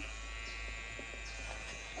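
Electric hair clipper running steadily with a buzz as it cuts a child's short hair against a comb, with a few faint clicks.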